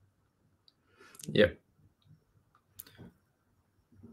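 A couple of short, sharp clicks, one just before a spoken 'yeah' and one about a second and a half later, over otherwise quiet room tone.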